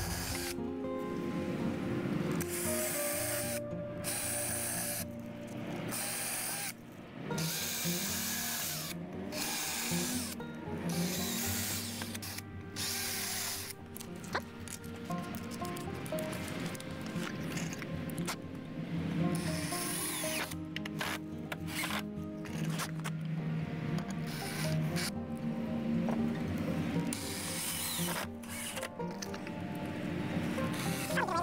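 Background music with a steady bass line, over a cordless drill running in many short stop-start bursts as it drills holes and drives screws into the wooden boards of the stand.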